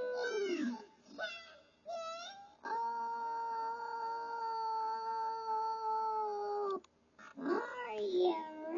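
A high-pitched voice sings a few short sliding notes, then holds one long steady note for about four seconds that cuts off sharply. More gliding vocal sounds start near the end.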